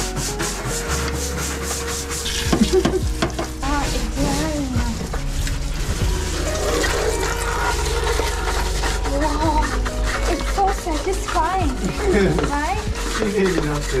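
A stiff hand scrub brush scrubbing hard plastic surfaces in quick back-and-forth strokes, over a steady low hum.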